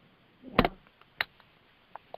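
A sharp click about half a second in, with a softer click about half a second later.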